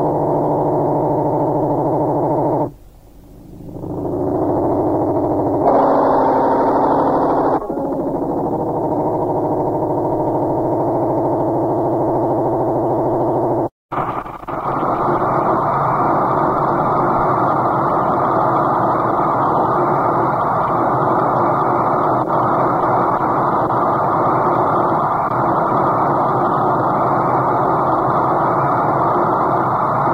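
Experimental electronic music: a synthesizer drone of steady, layered tones that drops away about three seconds in and swells back. Near the middle it cuts off in a brief silence between tracks. A new piece then starts as a dense, steady noise drone.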